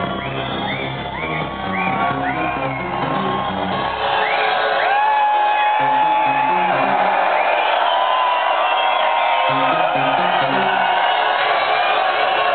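Techno played live over a venue PA, recorded from within the crowd. The deep bass drops out about four seconds in and a pulsing bass line returns a couple of seconds later, while people in the crowd whoop and shout.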